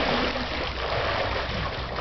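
Water splashing and churning in a swimming pool as a person moves through it, a steady rushing wash.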